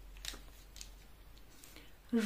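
Faint plastic clicks of felt-tip markers being handled: pens knocking together as the red one is picked from the bunch and its cap is pulled off.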